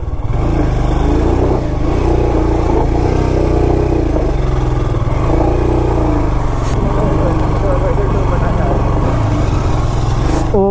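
Royal Enfield Himalayan's single-cylinder engine running at low speed on a rough dirt climb, its pitch rising and falling as the throttle is worked.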